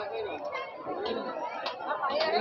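Background chatter: several people talking at once, their voices overlapping.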